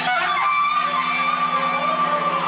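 Live band music: a steady low drone with a fast pulse, and a single high note held from about half a second in.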